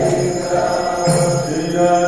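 Kirtan: a devotional mantra sung as a chant over musical accompaniment, with held sung notes and a steady high ringing.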